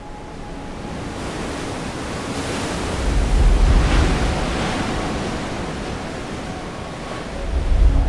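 Ocean surf with wind rushing over the microphone, swelling in two gusts, about three seconds in and again near the end.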